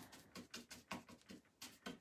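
A paintbrush dabbing thick, textured chalk paint onto wood: about half a dozen faint, irregular soft taps.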